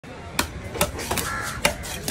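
Heavy cleaver chopping into a trevally on a wooden chopping block: four sharp chops at uneven intervals.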